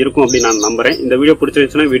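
A man's voice over background music, with birds chirping.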